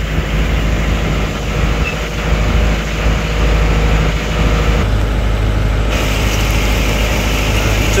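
Boat engine running steadily under a wash of wind and water noise; the engine note shifts about five seconds in.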